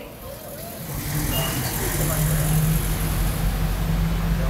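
Steady low hum of a motor vehicle's engine running, coming up about a second in.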